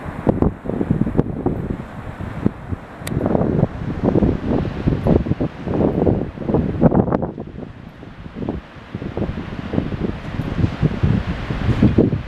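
Wind buffeting the microphone in uneven gusts, over the steady wash of small waves breaking on a sandy beach.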